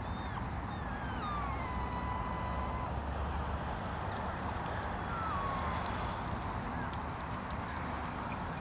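A dog whining: a long, thin, high whine that slides down and then holds steady for over a second, then a shorter falling whine about five seconds in. Under it is low wind noise, and from about four seconds a growing run of light, sharp, jingling clicks as the dogs run close.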